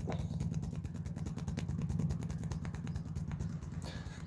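The fleshy edge of a hand rubbing and knocking rapidly along a rough concrete ledge in a knife-hand conditioning drill, making many quick scuffs and taps. A steady low engine-like drone runs underneath.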